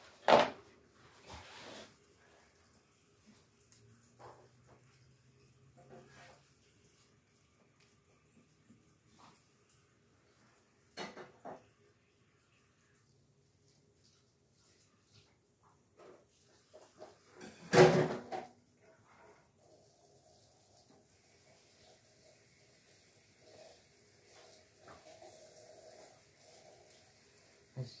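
Hands handling an artificial Christmas tree's branches and light-string plug, with scattered clicks and knocks. The loudest, a sharp knock, comes a little past halfway.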